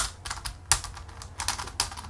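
A MoYu MeiYu 4x4 speed cube being turned by hand: a run of irregular plastic clicks and clacks as the layers move. The cube has the new replacement center caps fitted, which make its turning really, really grindy.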